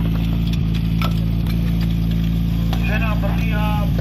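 Portable fire pump's engine running at a steady speed, a loud, even hum. A few sharp knocks come in the first second and a half, and voices call out about three seconds in.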